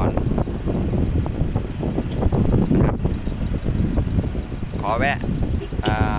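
Wind buffeting the microphone: a rough, uneven rumble that rises and falls, with brief speech near the end.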